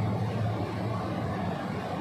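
A steady low hum with a faint even background noise, the drone of an open-air public-address setup between phrases of a speech.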